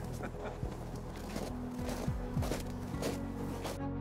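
Footsteps crunching in packed snow with outdoor hiss, under soft sustained background music that comes in about halfway; near the end the outdoor sound cuts off and only the music remains.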